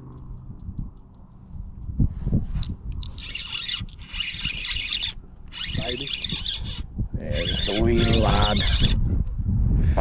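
Spinning reel being cranked in three spells of about two seconds each, its gears and rotor whirring as line is retrieved on a hooked fish. A low wind rumble runs under it, and a man's voice groans during the last spell.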